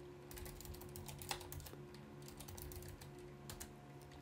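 Faint computer keyboard typing: two quick runs of key clicks with a short pause between them, about a second in and again from about two seconds in.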